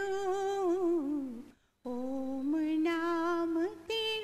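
A woman humming a slow, wordless melody in long held notes that waver and slide between pitches, broken by a brief pause about one and a half seconds in.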